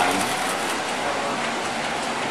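O-gauge model train, a Williams Trainmaster diesel locomotive pulling its cars, running along three-rail track with a steady rolling rumble.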